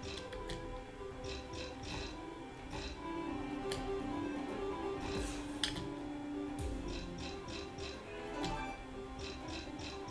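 Online slot machine game audio: a steady background melody with short clusters of clicking ticks every second or two as the reels spin and stop.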